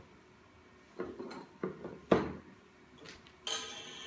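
Plastic toy lacing buttons clicking and knocking against a glass tabletop and against each other as they are handled: a few separate sharp knocks, the loudest about two seconds in.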